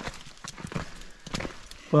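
Footsteps on a wet, stony path: a few irregular sharp taps of feet on loose stones as the walker goes downhill.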